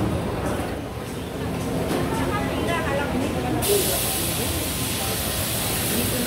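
Busy restaurant ambience with indistinct voices in the background; a little over halfway through, a steady high hiss starts suddenly and keeps going.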